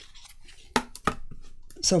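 An acrylic quilting ruler being shifted and set down on card and a cutting mat: a few light clicks and taps bunched together near the middle.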